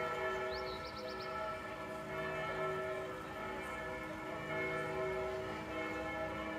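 Church bells ringing a continuous peal, the tones of several bells overlapping and ringing on.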